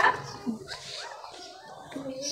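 A young puppy whimpering faintly, a few short squeaky glides in the first second.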